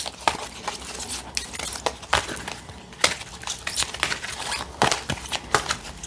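A deck of thick tarot cards being handled and drawn from, with irregular sharp clicks and short rustles as cards slide against one another and are laid down.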